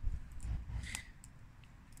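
A few faint crackles from wood burning in a Lixada wood gasifier stove, over a low rumble that fades away.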